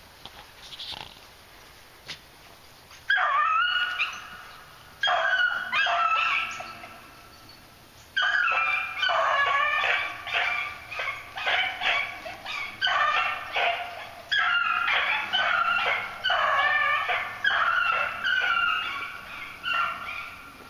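Beagle hounds baying on a rabbit chase: a few bays from about three seconds in, then a near-continuous run of repeated bays from about eight seconds in.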